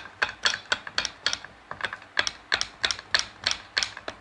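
Rapid, uneven light metal clicks and taps, about four to five a second, from a piston being worked by hand against a hammer.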